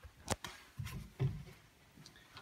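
A few light knocks and clicks from the pine wardrobe's woodwork being handled: one sharp click about a third of a second in and a softer one just past a second.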